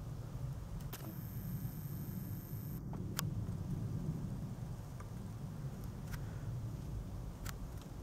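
Steady low rumble on a handheld camcorder's microphone, with a high whine from the camera's zoom motor for about two seconds starting a second in, and a few faint sharp clicks.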